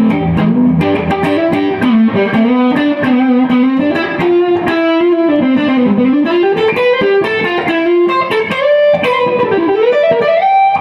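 1967 Gibson ES-335 electric guitar on its neck pickup, played through a 1965 Fender Deluxe Reverb amp: a single-note lead line, with notes bent up and down about midway and again near the end.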